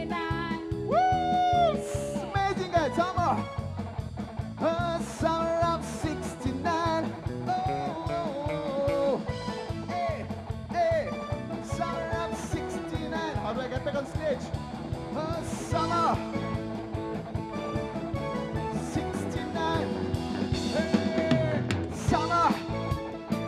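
Live rock band playing: a steady drum and bass beat under a melodic lead line that bends in pitch.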